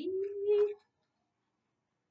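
A woman's drawn-out hesitation sound as she searches for a page number, her voice gliding up in pitch and held for under a second.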